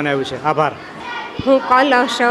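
Speech only: a man talking, then after a short pause a woman's higher voice begins speaking.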